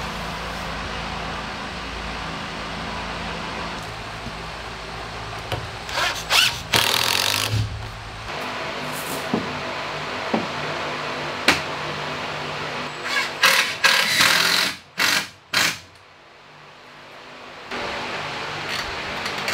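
Cordless drill driving screws into wooden boat frames in short runs, one around six seconds in and a cluster of several near the end, each stopping abruptly, over a steady background hum.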